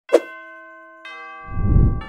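Bell-like chime struck twice, each strike ringing on as a set of clear tones, the second about a second in. A loud, low rushing noise swells near the end.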